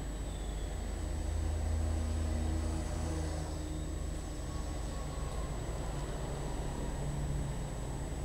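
A motor vehicle engine running nearby: a low, steady rumble that swells for a couple of seconds about a second in, then settles. A faint, steady high-pitched whine sits above it.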